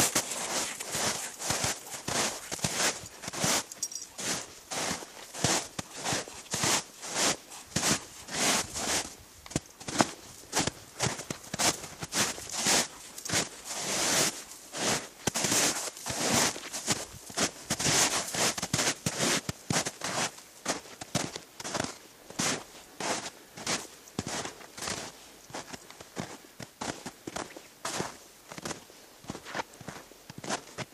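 Footsteps crunching through snow, a steady run of steps walking downhill.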